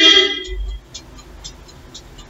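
A single short horn-like toot, starting suddenly and fading within about half a second.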